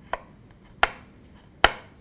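Chef's knife chopping a garlic clove on a wooden cutting board: three sharp chops, the first light and the next two louder, about 0.8 s apart.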